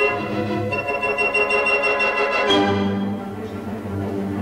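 Symphony orchestra playing sustained chords with a high note held above them; a new chord comes in with a sharp accent about two and a half seconds in.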